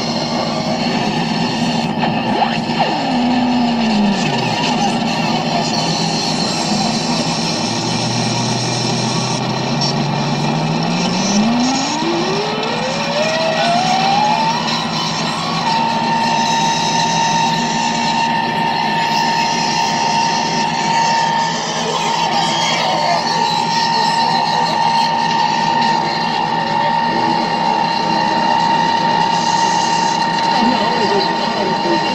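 Improvised electronic noise from a chain of effects pedals and a knob-controlled noise box: a dense, loud wall of noise. A tone slides downward about three seconds in. Later a low tone sweeps steadily upward for several seconds and settles into a held high whine for the rest.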